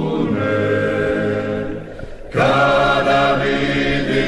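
Dalmatian klapa vocal group singing in close harmony, as a soundtrack song. Held chords thin out and fade about two seconds in, then the voices come back in together on a full chord.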